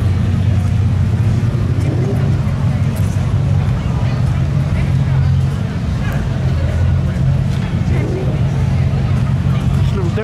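A car engine running at low revs: a deep, steady rumble that holds throughout, with crowd chatter over it.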